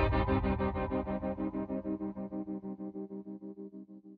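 The song's closing sustained guitar chord through effects, pulsing rapidly and evenly, about eight times a second, and fading away as the song ends.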